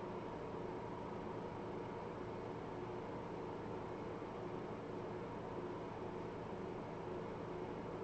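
Steady low hiss and faint electrical hum of room tone, with no distinct events.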